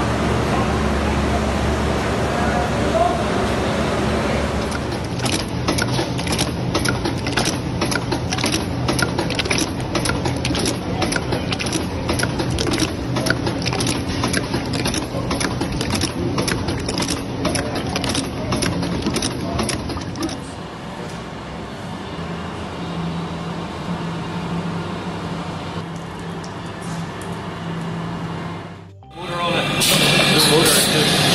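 Food-depositing machine running in a factory: a steady hum, with a long run of sharp, regular clicks through the middle stretch.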